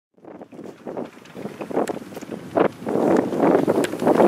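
Wind buffeting an outdoor microphone, growing louder over a few seconds, with a few faint clicks.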